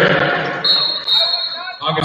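Indistinct voices of volleyball players and spectators echoing in a gymnasium between rallies, with a ball bouncing on the hardwood floor. A steady high tone lasts about a second in the middle.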